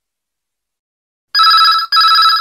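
After a second and more of dead silence, a telephone starts ringing: two short rings in quick succession.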